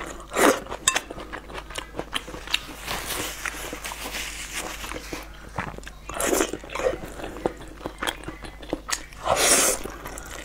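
Close-up sound of a person eating thick noodles with chopsticks: several slurps of about a second each, near the start, midway and near the end, with wet chewing and mouth clicks between.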